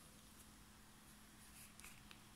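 Near silence: room tone with a faint steady hum and a couple of faint clicks near the end.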